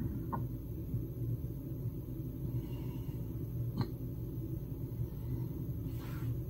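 Steady low room hum with no speech, broken by two faint clicks, one shortly after the start and a sharper one just before the four-second mark.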